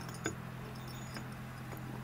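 A few faint, light clicks and taps of a metal water pump being worked into its tight mounting spot against the engine block, over a steady low hum.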